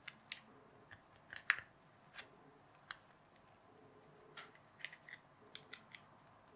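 Pry tool working along the seam of a laptop battery pack's plastic case, making irregular sharp clicks and short scrapes as it levers at the joint, the loudest about a second and a half in. The case is not coming apart easily.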